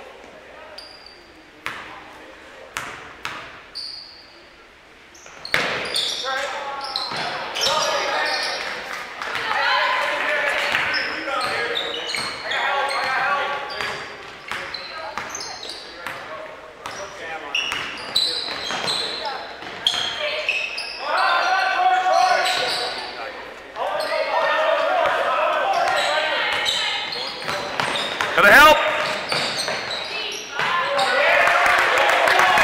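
A basketball bouncing on a hardwood gym floor, with a few sharp knocks in the quieter first five seconds. Then indistinct shouting from players and crowd echoes through the gym, and a loud bang comes near the end.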